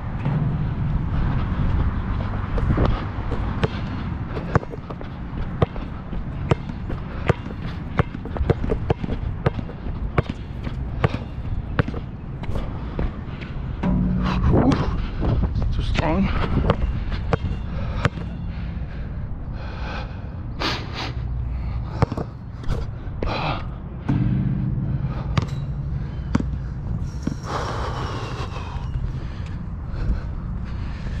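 Wilson NCAA Replica basketball bouncing on an outdoor hard court and hitting the rim during shooting practice: many sharp bounces, irregularly spaced.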